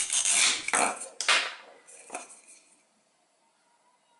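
Velcro ripping apart as a plastic toy knife slices a toy watermelon into two halves: a few loud rasping tears in the first second and a half, then a few light plastic clicks about two seconds in.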